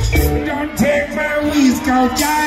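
Amplified live band music with a singer, played over a festival PA system; the heavy bass line drops back about halfway through.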